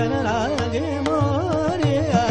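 Male Hindustani classical vocalist singing raga Bhimpalasi in wavering, ornamented melodic turns, over a steady tanpura drone and tabla strokes.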